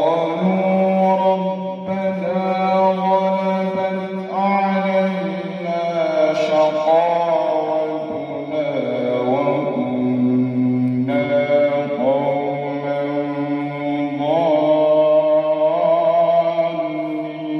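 A man reciting the Quran in slow, melodic tartil into a microphone, beginning a new phrase right at the start and drawing out long held vowels with slow rising and falling pitch turns.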